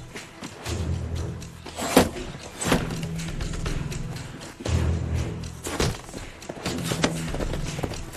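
Tense film score built on repeated low held notes, with several sharp thuds from the action over it.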